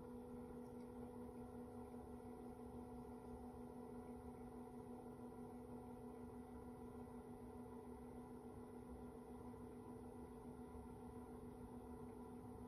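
Faint, steady hum from a spinning electric potter's wheel, near silence otherwise.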